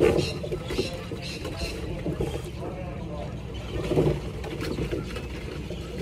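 A coxed quad scull under way with its bow pair rowing, heard from the cox's seat: water noise along the hull with scattered short clicks, and louder surges at the start and about four seconds in.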